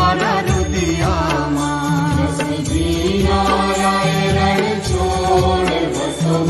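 Hindu devotional aarti hymn: a singing voice with instrumental accompaniment and a steady low backing.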